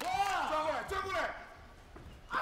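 Raised human voices: several short, high-pitched shouted calls overlapping in the first second or so, then quieter.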